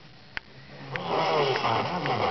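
Audio of a distant FM broadcast station heard through a portable world band receiver's speaker, picked up by sporadic-E skip. A brief gap of faint hiss with one sharp click, then a voice from the station returns about a second in.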